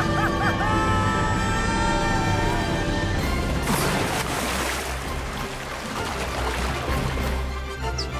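Background music, with a splash about three seconds in as a small body drops into duckweed-covered water, followed by a few seconds of water noise under the music.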